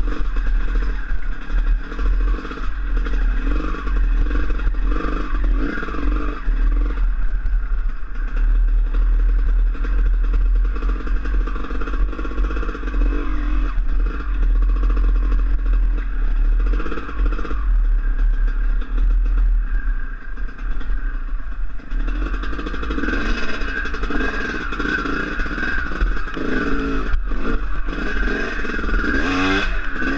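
Dirt bike engine heard from a helmet-mounted camera while riding over a rocky creek-bed trail, the engine note rising and falling with the throttle. It revs harder in the last few seconds, over a steady low rumble.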